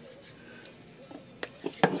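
A few sharp clicks of handling at the open typewriter mechanism during a solder repair, three in the second half with the last the loudest, over a faint steady hiss.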